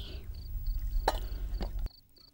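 Crickets chirping in short, even pulses, about three a second, over a low hum. Two sharp knocks sound, one about a second in and one just after.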